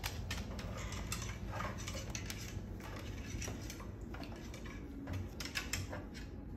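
Moluccan cockatoo's claws clicking and tapping on a hardwood floor as it walks, in an irregular run of sharp ticks, with a quick flurry of clicks near the end as it grips the wooden stair railing.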